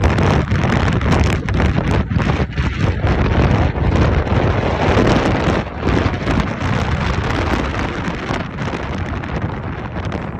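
Wind buffeting the phone's microphone: a loud, rough rushing that flutters in gusts and eases slightly over the last few seconds.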